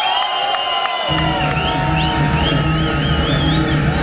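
Live punk band, amplified and loud: high squealing guitar feedback and crowd whoops over the stage, then bass and drums come in about a second in as the next song starts.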